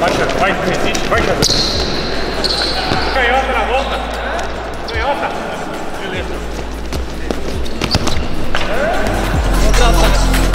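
Futsal balls thudding and bouncing on the court in a large indoor arena, a sharp knock every second or two.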